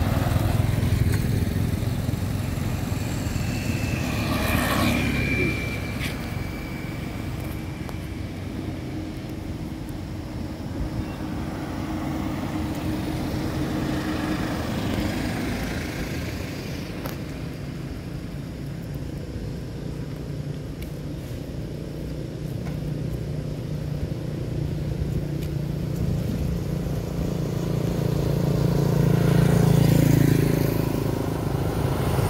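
Motor vehicles passing on a road, a low engine hum that swells and fades, growing loudest near the end, with a brief high tone about five seconds in.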